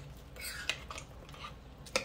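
Spoon stirring thick chili in a slow-cooker crock: a few short, soft wet scrapes, then a sharp knock near the end.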